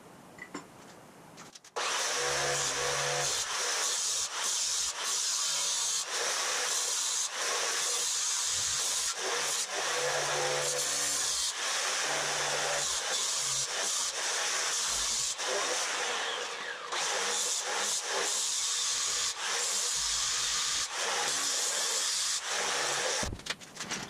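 Handheld angle grinder cutting through a steel chassis frame rail. It starts about two seconds in, after a few light handling ticks, and then runs steadily with brief dips as the disc bites into the metal.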